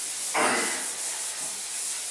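Chalkboard being wiped with a cloth duster: a steady rubbing hiss of cloth over slate, swelling briefly about half a second in.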